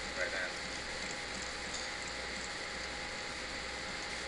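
Steady hiss of room background noise, with a faint voice briefly at the start.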